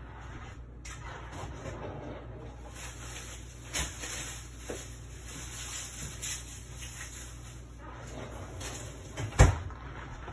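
Low steady hum with faint rustling and a few light knocks of objects being handled, then one sharp knock, the loudest sound, about nine seconds in.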